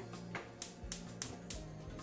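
Background music, with a quick run of sharp clicks, about three a second, from a gas hob's spark igniter lighting the burner under a saucepan.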